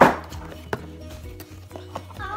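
Cardboard box being handled: a loud, sudden scrape at the start as the inner box slides against its sleeve, then two light knocks of cardboard.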